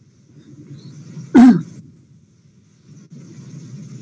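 A single short cough about a second and a half in, over a low background hum.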